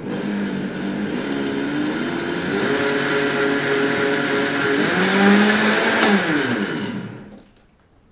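High-speed countertop blender running briefly to blend nut milk, with a steady motor whine that shifts in pitch partway through. Switched off about seven seconds in, the motor spins down, its pitch falling as it fades.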